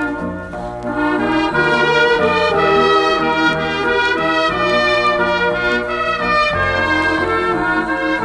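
Light-music orchestra playing an instrumental passage of a slow serenade, brass to the fore over a bass line.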